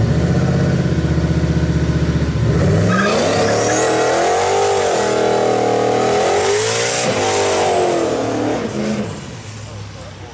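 Ford Mustang doing a burnout: the engine runs loud and steady, then about three seconds in revs up high and holds there with a wavering pitch over the hiss of spinning rear tyres, falling away near the end.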